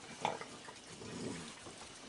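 Raccoons eating: faint wet chewing and snuffling, with one brief louder sound near the start.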